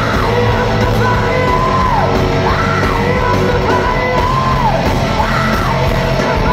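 Rock band playing loud and live in a concert hall: drums, heavy guitar and a melodic phrase that rises and falls, repeating about every second and a half.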